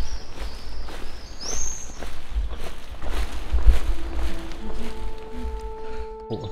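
Footsteps on a walking path, a step every half second or so, with wind rumbling on the microphone and a brief high bird chirp about a second and a half in. A few held music notes come in near the end.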